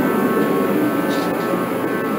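Craftsman torpedo-style kerosene heater running: a steady rush from its fan and burner with a steady high whine over it.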